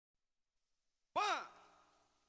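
Silence, then a single word called out by a voice about a second in, the start of a spoken count.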